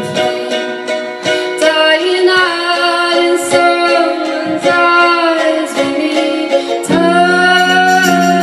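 Live song: a woman singing over a strummed acoustic string accompaniment.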